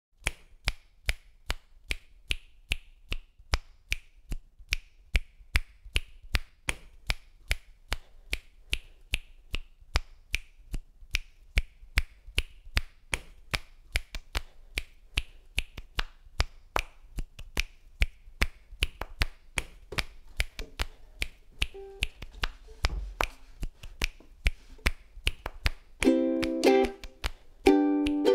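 Finger snaps in a steady repeating rhythm, about two to three a second, looped on a loop station into a beat. Faint short tones join near the end.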